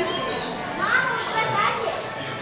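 Young children's voices as they play and run, with a couple of rising high-pitched calls.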